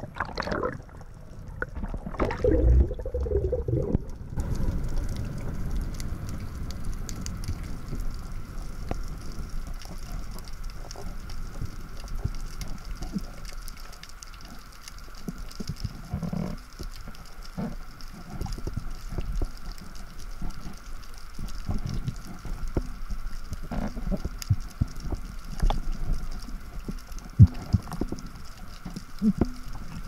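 Underwater ambience heard through a diving camera. Water rushes for the first few seconds, then comes a steady faint hum with constant fine crackling clicks and occasional low thumps as the diver moves along the bottom.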